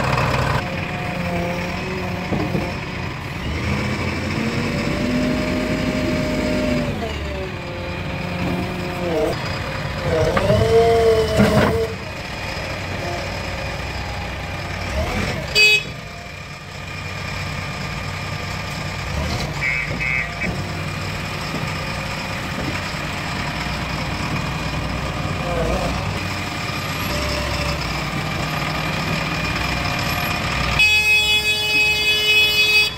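Diesel engine of a JCB 3DX backhoe loader running steadily, with a brief loud clatter about fifteen seconds in.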